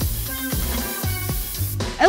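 Background music with a steady beat, over the hiss of an aerosol spray-paint can that cuts off near the end.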